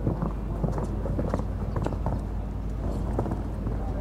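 Hoofbeats of a show-jumping horse cantering on sand arena footing after clearing a fence: a run of irregular dull thuds over a steady low hum.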